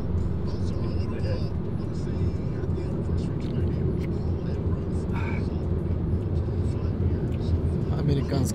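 Steady road and engine noise inside a moving car's cabin: a low, even drone.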